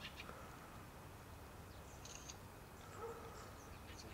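Quiet outdoor ambience with a few faint, brief high chirps about two seconds in, typical of small birds.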